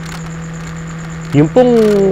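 A steady low hum, then a man's voice from about one and a half seconds in, drawing out a single word.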